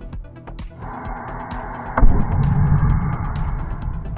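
Electronic music with a steady beat. About two seconds in, a sudden loud low roar starts and runs on for about two seconds as the waste oil burner's flame lights in its glass combustion chamber.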